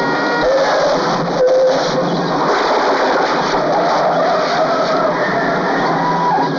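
A car's engine revving hard, its pitch rising and falling, with the noise of tyres on a dirt road as it speeds away.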